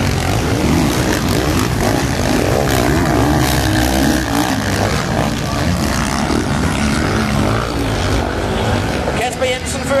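Several motocross bikes racing, their engines revving up and down with many overlapping, wavering pitches. A commentator's voice comes in near the end.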